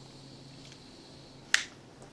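A single sharp snap or click about one and a half seconds in, over a faint steady low hum of room tone.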